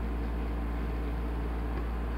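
Steady low hum with an even hiss: indoor room noise, unchanging throughout.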